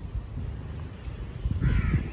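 A short, high-pitched bird call near the end, over steady low outdoor background rumble.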